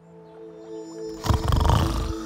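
A cartoon snoring sound effect begins about a second in and grows loud, over soft background music with held notes.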